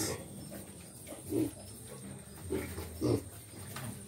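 Weaned six-week-old Landrace piglets giving a few short, low grunts, spaced out over the seconds.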